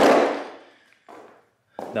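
Plastic-cased weight plates of an adjustable dumbbell clattering against the handle and storage base as the dumbbell is set back into its cradle, dying away within half a second, followed by a faint knock about a second in.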